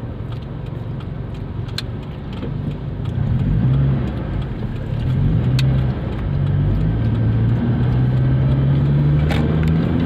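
Car engine pulling away and picking up speed, its low hum growing louder about three seconds in, shifting pitch a few times, then holding steadier over the last few seconds.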